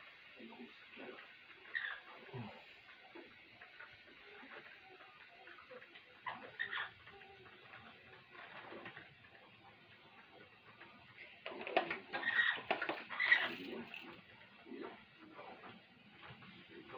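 Amazon parrot making soft, scattered sounds while moving and flapping its wings, with a louder flurry of short sounds about twelve to fourteen seconds in.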